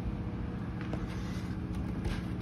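Steady low hum of a quiet room, with a few faint held tones in it and no distinct knocks or clicks.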